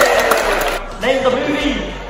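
A male voice holding a long shout that falls slowly in pitch, then a few short spoken syllables that fade away.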